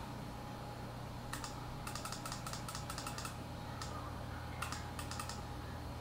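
Faint clicking of computer keyboard keys in irregular runs, a busy spell from about a second and a half in and another short one near the five-second mark, over a steady low hum.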